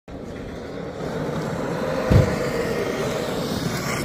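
Traxxas RC monster truck driving on gravel, its motor whining up and down in pitch, with one low thump about two seconds in.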